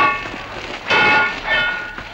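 Swords clashing in a melee: two loud metallic clangs with a ringing tail, one at the start and one about a second in, and a weaker clang after it.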